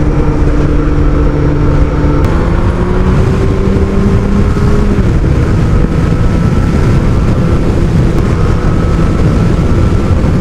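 Kawasaki ZX12R's inline-four engine running under way, its pitch stepping up about two seconds in, climbing slowly, then dropping back about five seconds in, over a steady rush of wind and road noise.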